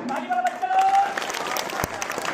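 A crowd of schoolchildren clapping in applause. A voice calls out with a held note about half a second in, and there is a single sharp click near the end.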